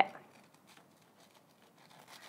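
Knife cutting through a slice of toast on a wooden cutting board: faint, scattered crunching and scraping strokes.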